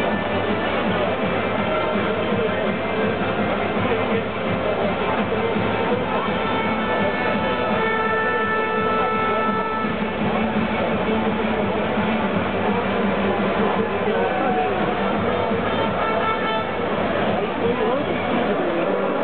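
Music playing over an ice hockey arena's sound system, with a large crowd talking beneath it, echoing in the big hall.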